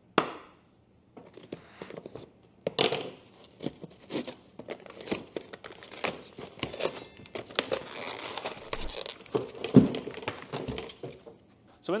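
A cardboard filament box being opened by hand: a sharp knock at the start, then a long stretch of rustling, scraping and tearing of cardboard, paper leaflets and plastic wrap, with a heavier thump about two seconds before the end.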